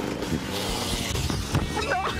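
Motoball motorcycle engine running as the rider comes in toward the goal, a steady mechanical drone with a hissing wash through the middle.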